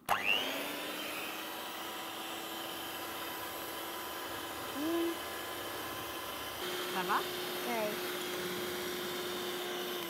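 Ufesa electric hand mixer running steadily, its beaters whisking eggs and sugar in a glass bowl. Its tone shifts slightly about two-thirds of the way through.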